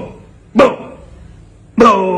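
A man imitating a dog's bark with his own voice: one short bark about half a second in, then a longer, drawn-out bark starting near the end.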